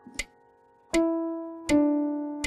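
Digital piano playing a slow beginner practice piece against a metronome clicking about 80 beats a minute. The first click falls in a short gap with no note. Then a low note and a second note start on the next two clicks, each held and fading.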